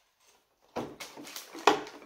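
A moment of near silence, then a child's voice says "Dad" over the small handling noises of plastic toy figurines and foil blind bags. About three-quarters of the way through there is a single sharp plastic click as a figurine is pressed into the moulded plastic display case.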